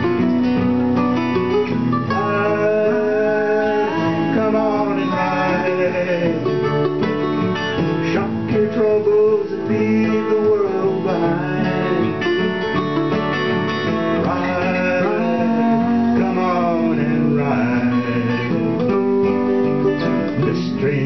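Live acoustic folk music in G: two acoustic guitars strumming and a mandolin playing, with a melody line that slides and bends in pitch over the strummed chords.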